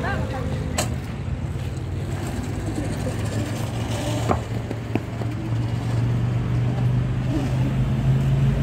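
Road traffic: a steady low engine hum that swells over the last couple of seconds as a vehicle draws nearer, with a few sharp clicks and faint voices.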